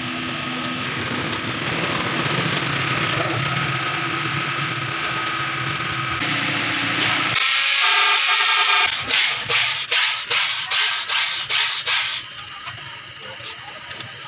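Electric drill spinning an abrasive hone against the wall of a diesel engine's cylinder bore: a loud scraping hiss that sets in about seven seconds in. From about nine seconds it pulses about three times a second as the hone is worked up and down, then it stops a couple of seconds before the end. Before it there is a steadier, broader mechanical noise.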